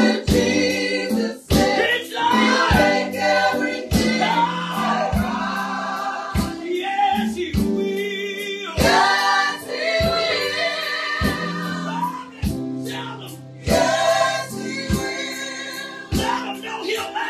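Gospel song sung by a small group of mixed voices, a woman's lead with the others singing along, over a sustained low accompaniment and a steady beat of sharp strikes a little over once a second.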